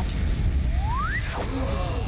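Edited-in cartoon sound effect for the chemistry experiment going off: a low rumble with a rising whistle, then a bright shimmering chime about a second and a half in, over background music.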